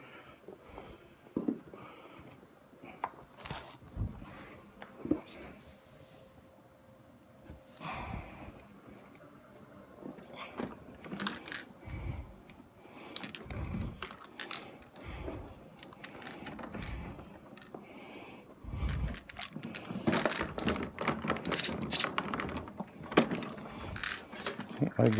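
Scattered clicks, knocks and dull thumps of a rotary carpet-cleaning machine and its pad being handled and readied, its motor not yet running. A busier run of clicking and rattling comes near the end.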